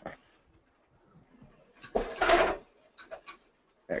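Air-assisted swing-away heat press, set to about 20 PSI, closing onto a shirt: a short burst of air hiss about two seconds in, followed by a few light clicks.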